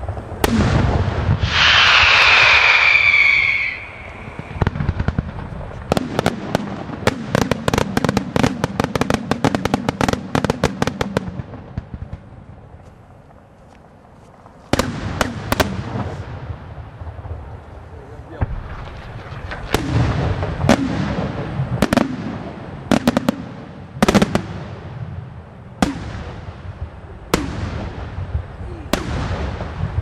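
Aerial fireworks display. About two seconds in there is a loud, shrill high-pitched sound, then a dense run of rapid crackling bangs, then a short lull. After that, single shell bursts go off about every one to two seconds, each followed by a rolling echo.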